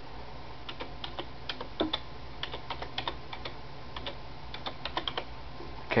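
Typing on a computer keyboard: short, irregular runs of key clicks as an IP address is entered.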